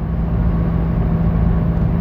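A car running, heard from inside the cabin: a steady low rumble with an even hum.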